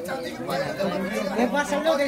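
Indistinct chatter of several people talking at once in a room.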